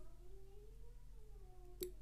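Near-quiet room tone with a faint, wavering pitched sound and a single light click near the end.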